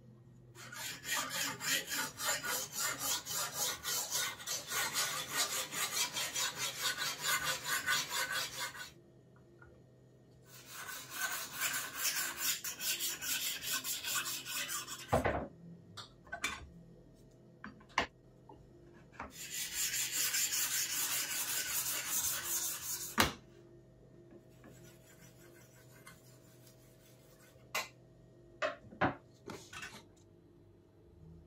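A sharpening stone on a guided sharpening jig scraping along a steel knife edge in rapid, even strokes, about three a second, in three long runs. Between the runs come short pauses with a few sharp knocks.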